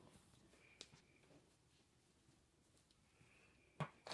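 Near silence: room tone, with a faint click about a second in and a short, louder click just before the end.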